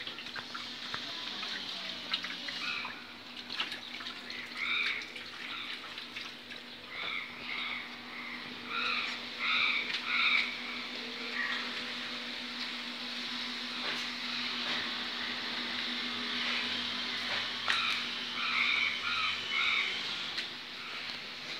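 Repeated short, pitched animal calls, coming singly, in pairs and in small clusters, over a steady low hum.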